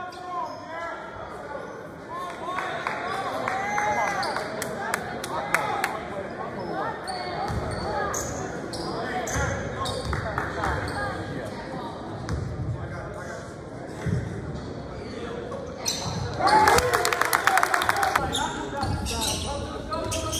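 Basketball bouncing on a hardwood gym floor amid spectators' voices, echoing in a large gym. A louder cluster of sharp knocks and voices comes near the end.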